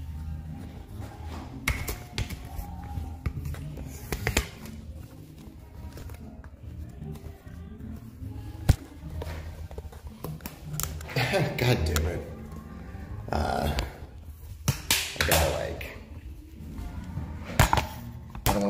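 Background music playing with indistinct voices, broken by several sharp knocks as the phone is handled and swung about.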